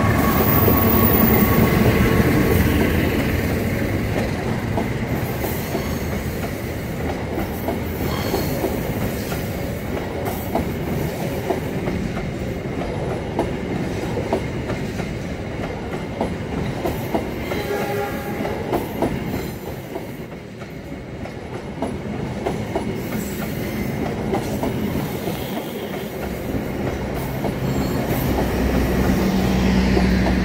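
A long-distance passenger train hauled by a diesel locomotive passes close by. It is loudest at the start as the locomotive goes past. Then a long run of coaches follows, with steady wheel clatter over the rails and a brief squeal a little past the middle.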